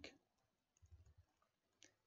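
Near silence with a few faint computer keyboard clicks, one sharper click near the end.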